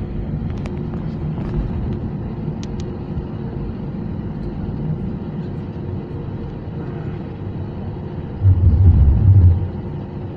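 Steady low rumble inside the cabin of an Airbus A320-232 as it rolls slowly on the ground, from its IAE V2500 engines and the wheels on the wet pavement. Near the end comes a louder, deeper rumble lasting about a second.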